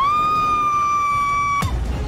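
Dramatised sound effects of a van striking a pedestrian. A long, high-pitched screech swoops up at the start and holds one steady pitch for about a second and a half. It is then cut off by a sharp crash-like hit with a deep low boom after it.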